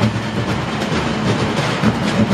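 Junk percussion group beating drums and barrels together in a dense, steady, driving rhythm.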